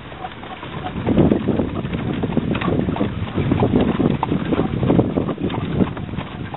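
Horse-drawn cart rolling over a dirt track: an uneven low rumble and rattle with occasional knocks, mixed with wind buffeting the microphone.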